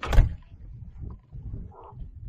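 A loud handling knock at the start, then uneven gusts of wind rumbling on the phone's microphone.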